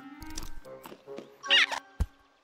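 Cartoon rodent characters chattering and squealing in short pitched calls, the loudest a high squeal about a second and a half in, over an orchestral score.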